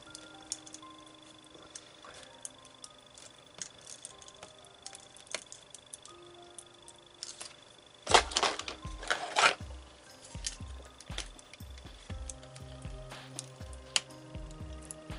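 Soft background music, with small clicks from hands working at a laptop's open plastic chassis and connectors. About eight seconds in there is a louder stretch of rubbing and knocking lasting about a second and a half, followed by a few lighter knocks.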